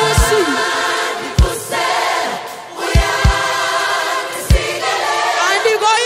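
Live gospel worship music: a choir sings sustained notes over a band, with a kick drum hitting about once a second.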